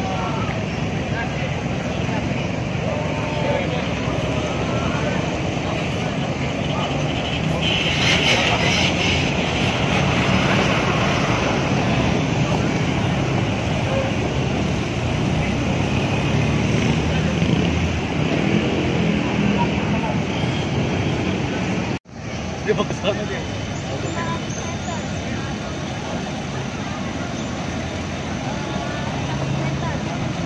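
Large tour buses' diesel engines running as they manoeuvre, a steady rumble under the voices of the watching crowd, with a louder noisy stretch about eight seconds in and a momentary break in the sound about two-thirds of the way through.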